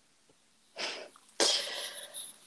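A person laughing breathily under their breath, without voice: a short puff of breath about a second in, then a louder, sharper one near the end.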